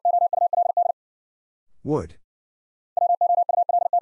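Morse code sent at 60 words per minute as a rapid run of beeps on one steady tone, spelling the word "would". The word "would" is then spoken once, and near the end the same word is sent again in Morse code.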